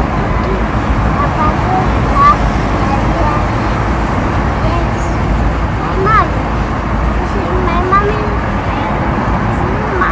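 Steady low rumble of a car on the move, heard from inside the cabin, with occasional short voices over it.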